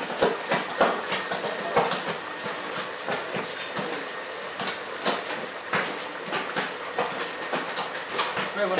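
Sliced peppers, onions and tomato paste sizzling in a hot wok while being stir-fried, with the spatula knocking and scraping against the pan at irregular moments.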